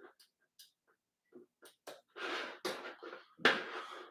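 A few faint clicks from working a laptop's mouse, then two louder breaths about two and three and a half seconds in.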